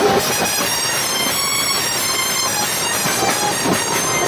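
Beats band playing: massed drums under a dense, steady wash of clashing cymbals.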